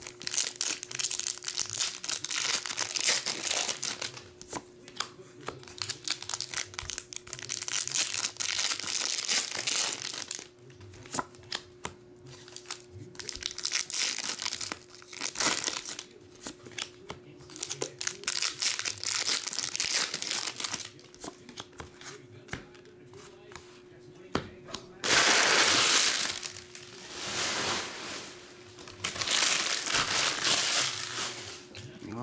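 Foil booster-pack wrappers crinkling and being torn open as Pokémon cards are handled, in repeated bursts with short pauses. The loudest burst comes near the end.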